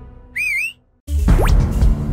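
Cartoon sound effect: a short warbling whistle that wavers up and down in pitch. It breaks off into a moment of silence, and then the background music starts again with a quick rising swoosh.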